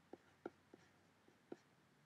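Faint, light clicks of a stylus tapping on a drawing tablet while handwriting a word, about half a dozen short ticks over near-silent room tone.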